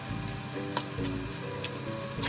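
Fried rice sizzling in a wok with scattered sharp crackles, under soft background music with a slow melody of held notes.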